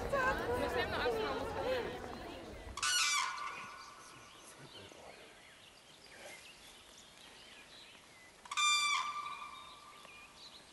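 A bird calls twice, once about three seconds in and again near the end, each call lasting about a second and standing out over a quiet outdoor background.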